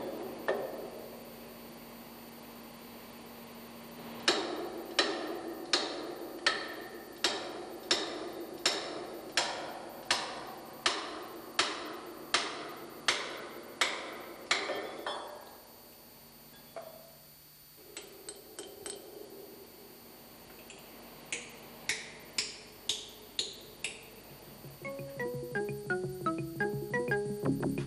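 Hammer blows on steel, ringing briefly, as the lower lock nut on a marine diesel engine's chain-tightener bolt is tightened: about fifteen evenly spaced strikes, roughly one every 0.7 s, then after a pause a shorter run of about six. Electronic music starts near the end.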